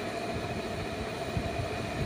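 Steady background room hum, a constant machine-like drone with faint steady tones and no sudden events.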